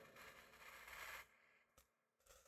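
Near silence: a faint hiss that cuts out to dead silence just over a second in.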